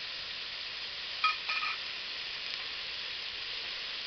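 Bacon, onions and garlic frying in oil in a stainless steel pot, sizzling steadily. A short higher-pitched sound comes about a second and a quarter in.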